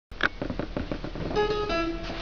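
Acoustic guitar played loosely before the song: a sharp click, a quick run of short muted strokes, then two single notes plucked and left ringing, the second lower than the first.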